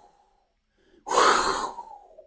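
A man's single loud, breathy exhale or intake of breath about a second in, after a silent pause.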